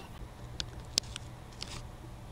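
Paper die-cut pieces and a thin metal cutting die being handled: a few light clicks and crinkles, the sharpest about a second in, over a low steady hum.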